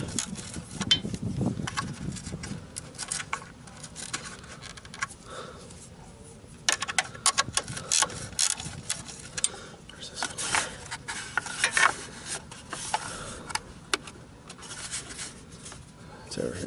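Small wrench turning the 8 mm bolts on a Warn winch's plastic solenoid cover: irregular metal clicks and scraping of the tool on the bolt heads, thickest in two runs in the second half.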